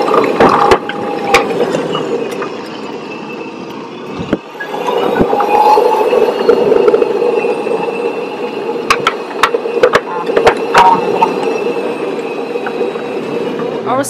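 A hotel shuttle buggy riding along a paved path: steady running noise scattered with small clicks and knocks from the ride, louder from about four seconds in.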